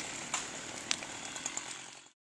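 Chainsaw running, slowly fading down, with two sharp cracks: one about a third of a second in, one about a second in.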